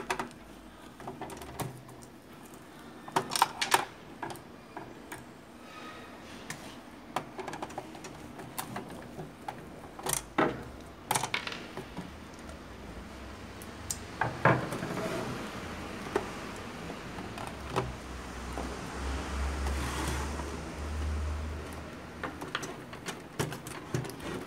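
Scattered clicks, taps and light knocks of a screwdriver working screws out of the plastic casing of an Epson L120 printer, with a low rumble of handling in the later part.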